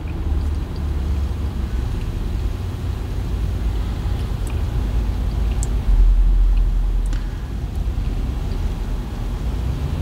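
A low, steady vehicle-like rumble that swells for a second or so about six seconds in.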